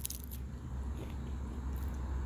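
Someone biting and chewing a raw fish pepper: a few crisp crunches near the start, then faint chewing, over a steady low rumble.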